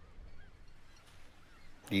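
A pause in speech: faint room noise, with a man's voice starting again at the very end.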